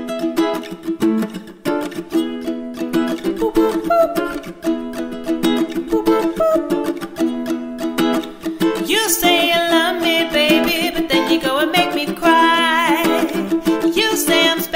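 Ukulele strumming a rhythmic chord intro. A woman's singing voice comes in about nine seconds in.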